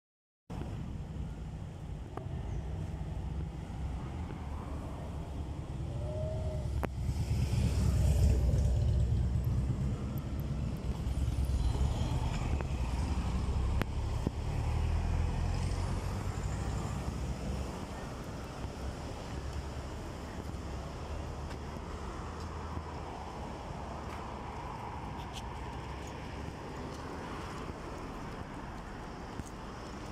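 Road traffic on a town street: cars passing. The loudest car goes by about eight seconds in and more pass a few seconds later, then the traffic settles to a steady low hum.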